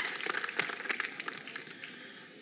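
A group of people clapping their hands, the applause thinning and dying away over the two seconds.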